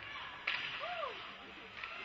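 A single sharp crack of a hockey puck impact on the ice, followed by a short shout that rises and then falls in pitch.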